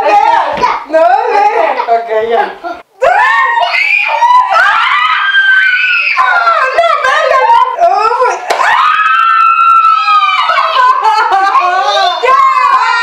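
Two women shrieking and laughing in high, drawn-out cries as a raw egg is smashed on one's head, with a brief sharp crack about eight and a half seconds in.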